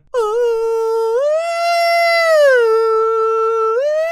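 A man singing one high, wordless held note, imitating a female vocalist bending her pitch along with a synth. It steps up about a second in, holds, slides back down, then rises again near the end.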